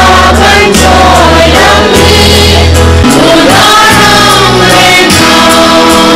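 A large mixed group of men and women singing a song together in chorus, loud and steady, over low sustained bass notes that change pitch every second or so and drop out briefly midway.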